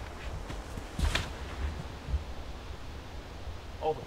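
Wind buffeting the microphone as an uneven low rumble over a faint hiss, with light rustling and one brief sharper rustle about a second in.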